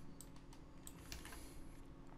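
A few faint, scattered taps on a computer keyboard over a low, steady hum.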